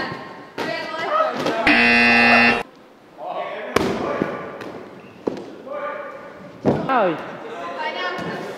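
A loud, steady buzzer tone lasting about a second, starting and stopping abruptly, among voices. A few sharp knocks follow later.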